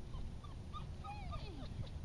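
A Norwegian elkhound whining in a string of short, high cries, one of them sliding down in pitch near the end, over a steady low rumble.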